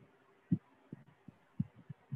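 Soft, irregular low thumps, a few a second, over a faint hiss: handling noise on a wired earphone microphone, its cable brushing and bumping against clothing.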